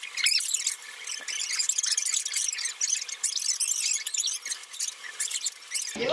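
Crinkling and rustling of gift wrap and plastic packaging as a present is unwrapped: a dense, irregular crackle with little low end.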